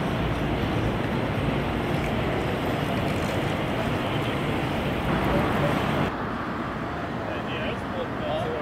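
Busy city street ambience: a steady wash of traffic with indistinct voices of passers-by. It drops noticeably in level about six seconds in.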